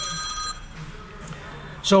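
An electronic ringing tone, several steady high pitches with a fast flutter, which stops about half a second in. A man's voice starts near the end.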